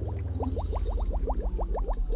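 Cartoon bubbling sound effect for a stream of bubbles being blown out: a quick run of short rising bloops, about ten a second.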